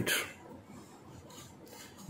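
Faint rubbing and handling noise from a printed circuit board held in the hands.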